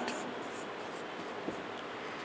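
Marker pen faintly scratching on a whiteboard as a row of short hooked strokes is drawn, with one light tick about three quarters of the way through.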